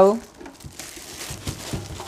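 Plastic wrapping on a new welding machine crinkling as it is handled, a low, irregular crackle with a few light clicks.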